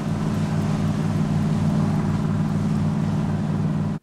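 A boat's engine running steadily: a low drone with an even throb, under a hiss of wind and water.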